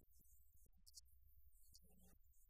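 Near silence: a steady low hum with a few faint clicks.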